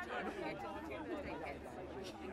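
Several voices talking and calling out at once, overlapping and faint.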